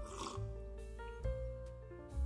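Slow background music of held notes over a deep bass. About a quarter second in, a brief slurp comes from a sip out of a small ceramic cup.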